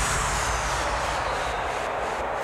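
Electronic dance-music noise sweep: a hissing whoosh with a faint falling tone in it, slowly fading out. It marks the hand-over from one hardcore track to the next in the mix.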